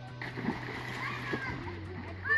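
Pond water splashing as a child plunges in from a tree, starting abruptly a moment in and going on as the children swim and splash, with children's voices over it.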